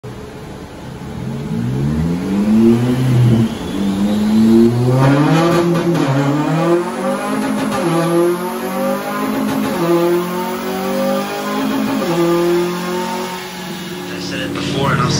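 Honda Civic FN2 Type R engine accelerating through the gears on a rolling road. Its pitch climbs and drops back at each upshift, about five times over the run.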